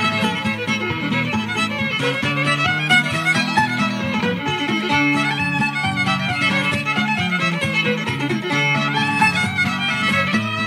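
Fiddle playing a quick run of notes in an old-time fiddle tune, with steady lower accompaniment underneath, from a live recording.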